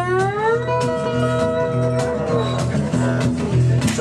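Acoustic guitar played slide-style with a beer bottle: one note slides up and is held for about two seconds, over a second acoustic guitar playing chords.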